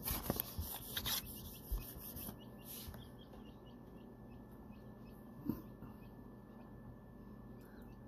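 Newly hatched quail chicks peeping faintly in an incubator, short high cheeps repeating over a thin steady tone. A few knocks and rubs of handling come in the first second or so.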